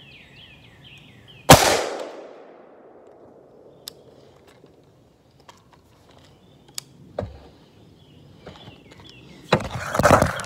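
A single AR-15 rifle shot about one and a half seconds in, sharp and very loud, echoing off through the trees for about a second. Birds chirp in the first second. A cluster of knocks and handling noise comes near the end.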